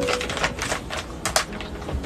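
Plastic packaging crinkling and crackling as it is handled and opened by hand: a quick, irregular run of sharp crackles.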